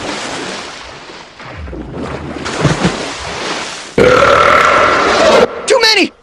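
A rushing noise that fades and swells again for about four seconds, then a cartoon dinosaur's long, loud, held vocal cry with a steady pitch, breaking into short voice sounds at the end.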